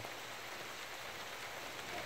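Rain falling steadily, heard as a faint, even hiss.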